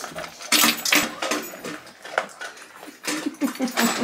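Dogs eating from stainless steel bowls in raised feeders, with irregular clinks and crunches against the metal.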